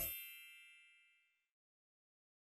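Music cuts off into a bright, bell-like chime that rings out and fades away over about a second and a half.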